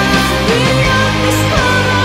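Symphonic power metal band playing live: distorted electric guitars, bass and drums, with a woman singing lead.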